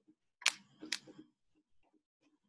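Two sharp clicks about half a second apart, each followed by a faint low knock.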